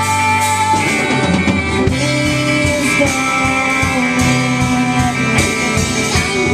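Live rock band playing: electric guitars holding sustained notes over bass guitar and drums.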